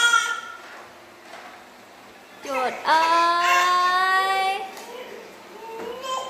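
A frightened baby crying: a brief whimper at the start, then one long wail held for about two seconds in the middle.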